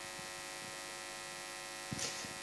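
Steady electrical hum and buzz from the sound system, with a faint click near the end.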